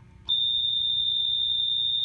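A steady, high-pitched electronic beep tone, one unbroken note that starts a moment in and lasts nearly two seconds.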